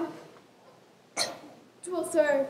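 Actors' voices on stage: a spoken phrase trails off at the start, a short breathy vocal burst comes about a second in, and more voiced sound begins near the end.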